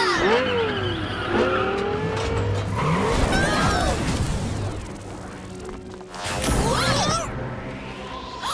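Cartoon car sound effects: engines revving and tyres squealing as vehicles speed off, over background music, with a louder burst of noise near the end.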